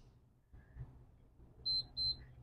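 Two short, high-pitched electronic beeps in quick succession near the end, the signal of a workout interval timer.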